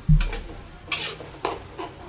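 Metal spatula scraping and tossing vegetables around a metal wok: about five short scrapes in two seconds, the loudest just after the start.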